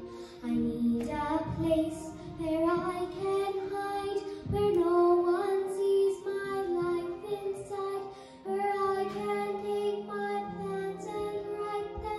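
A young girl singing a slow musical-theatre ballad solo, phrase after phrase of held, sliding notes with short breaths between them.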